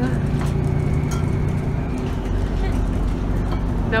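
A city bus running along the street, heard from inside the passenger cabin: a steady engine and road rumble, with a low hum through the first half that gives way to a deeper rumble.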